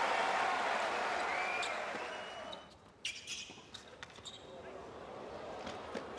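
Crowd applause dying away, then after a brief hush a tennis rally on a hard court: several sharp pops of the ball off the racket strings and off the court, spaced irregularly.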